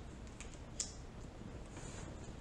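Tarot cards being handled, giving a few faint light clicks, the clearest a little under a second in.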